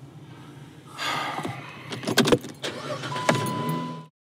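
Car interior with a low engine hum. From about a second in, the noise gets louder, with several sharp clicks and knocks, and a steady high electronic beep sounds through the last second.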